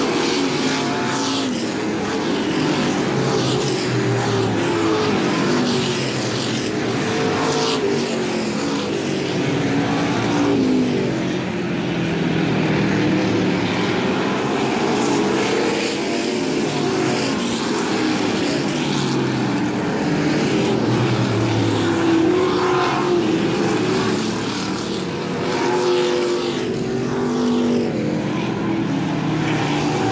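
A pack of short-track stock cars racing around an oval, several engines running at once at full throttle, their pitches rising and falling as the cars pass and go into and out of the turns.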